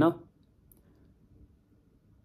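A man's word trails off at the very start, then a pause of faint room tone with one small click just under a second in.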